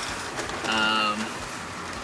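Steady hiss of a bus on the move, heard from inside its cab, with the even wash of rain or wet tyres. About half a second in, a man's voice holds one level note for under a second.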